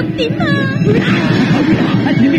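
Film soundtrack: tense background music under frightened, overlapping voices, with a woman whimpering in high, gliding cries.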